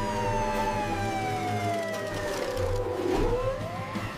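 Ambulance siren wailing: one slow falling sweep over about three seconds that turns and rises again near the end, over steady background music.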